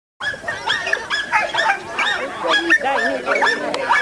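A dog yipping and barking over and over in quick, high-pitched calls, with people's voices mixed in.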